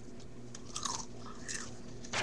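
Faint chewing and crunching of Cheetos, with small scattered crunch clicks.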